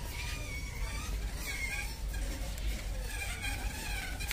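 Large warehouse-store background noise: a steady low rumble with faint, wavering high sounds over it.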